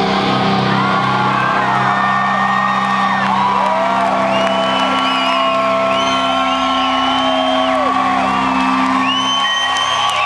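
Rock concert crowd whistling and whooping as a song ends, with many overlapping whistles rising, holding and falling. Underneath runs a steady low drone of held notes ringing from the stage amplifiers.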